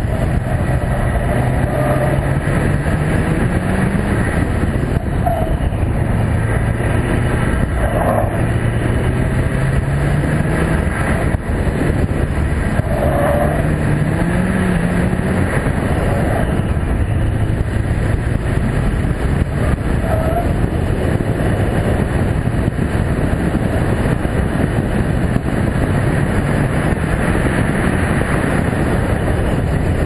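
Subaru WRX's turbocharged flat-four engine revving up and falling back again and again through the slalom, its pitch climbing and dropping every few seconds. A heavy rush of wind and road noise on the hood-mounted camera lies over it.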